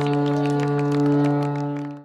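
A long, steady horn blast holding one unchanging pitch, with scattered sharp clicks over it; it cuts off suddenly at the end.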